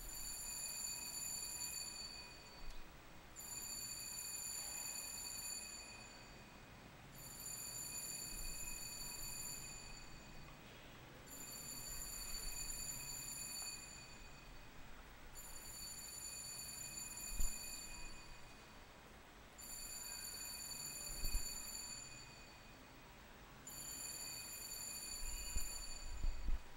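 Altar bells ringing in repeated rounds, each about two and a half seconds long with a short pause between, about every four seconds, marking the blessing with the Blessed Sacrament in the monstrance. A couple of faint knocks fall between the rounds.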